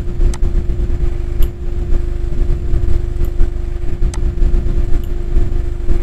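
A steady low rumble of background machinery with a constant hum, and a few faint mouse clicks scattered through it as tools are clicked and dragged.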